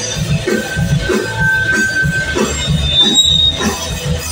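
Live rock band playing an instrumental passage on electric guitars and drums, with a high note held for about two seconds early on.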